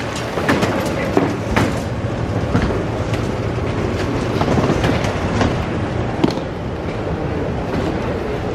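Airport baggage carousel running: a steady low rumble with its overlapping metal slats clattering and knocking at irregular moments.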